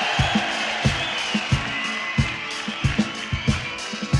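Live rock band playing an instrumental passage: drums keep a steady beat under sustained chords.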